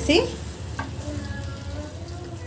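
Raw chicken pieces sizzling in tomato masala in an aluminium kadai as a spatula stirs them in, a steady frying sizzle.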